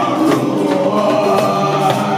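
Live folk band: several voices singing held notes together over acoustic guitar and a round-bodied cittern-like string instrument, with a few drum strikes.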